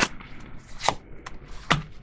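Oracle cards being drawn from a deck and laid down on the spread: a few sharp card snaps and clicks, less than a second apart.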